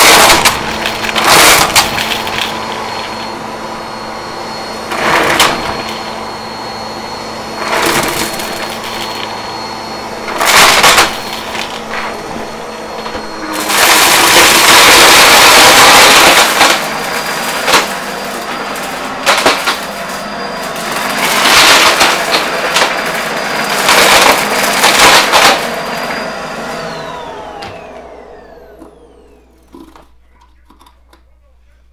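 Bissell upright bagless vacuum cleaner running over a mat strewn with coins and plastic pieces, its steady motor whine broken by loud clattering rattles as pieces are sucked up, with one longer spell of rattling in the middle. Near the end the motor is switched off and winds down in a falling whine.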